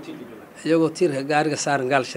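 A man speaking into a close microphone, starting just over half a second in after a short pause.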